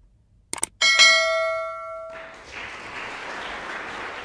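Sound effects for a subscribe animation: two quick clicks, then a bright bell ding that rings out for about a second, followed by a steady noisy hiss.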